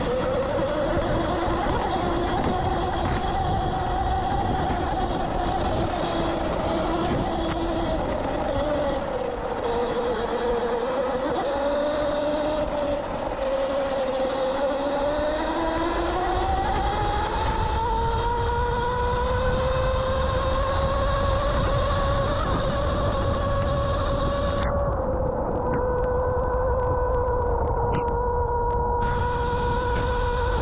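A 72-volt Sur-Ron electric dirt bike's motor whining, its pitch dipping and rising with speed and climbing noticeably about halfway through as the bike speeds up. A low rumble of wind and tyres on dirt runs underneath.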